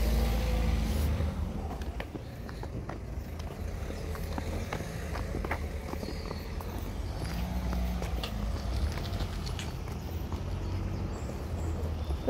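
A child's plastic-wheeled kick scooter rolling on asphalt pavement, with footsteps: irregular light clicks and scuffs over a steady low rumble. A broad rushing noise fills the first second and then fades.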